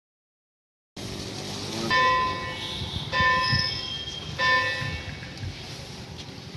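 A bell rings three times, about a second and a quarter apart, each ring clear and held for about a second, over a low background of outdoor noise that starts about a second in.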